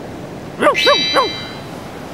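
A bright chime sound effect: several high ringing tones that start with a short upward sweep a little under a second in and ring for about a second, the cartoon 'ding' of a bright idea. Under its start come three short vocal sounds.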